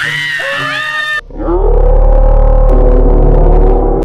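A woman's short shout, cut off about a second in and followed by a loud, deep, drawn-out edited sound effect with a slowly wavering pitch and heavy bass, like a slowed-down voice, lasting almost three seconds.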